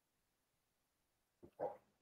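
Near silence, broken near the end by a short, faint vocal sound just before speech resumes.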